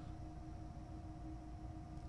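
Quiet room tone: a faint low rumble with a thin, steady hum.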